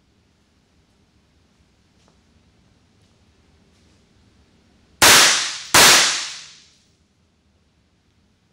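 Two shots from an Umarex Walther P99 replica 9mm blank-firing pistol, about 0.7 seconds apart, some five seconds in. Each sharp crack is followed by about a second of echo in the room, with faint handling noise before them.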